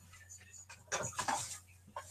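A short, faint voice off-microphone about a second in, over quiet room tone.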